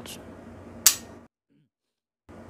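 A single sharp metallic click from a Rock Island Armory 1911 pistol, a little under a second in: the hammer falling as the trigger is dry-fired, a crisp break.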